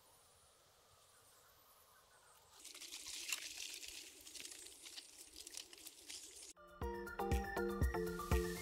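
Near silence, then about two and a half seconds in, pork belly sizzling in a pan on a portable gas stove, a faint hiss with small ticks. Near the end, music with a beat comes in and is the loudest sound.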